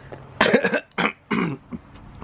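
A man coughing three times in quick succession, a phlegmy cough bringing up mucus.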